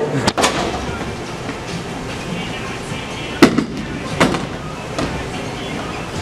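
Bowling alley noise: a steady rolling rumble of balls on the wooden lanes with several sharp knocks of balls and pins, the loudest about three and a half seconds in.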